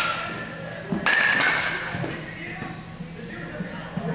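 A single sharp smack about a second in, a baseball being caught in a leather glove, followed by quieter background noise.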